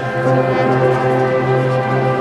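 High school marching band's brass and winds holding a long, loud sustained chord.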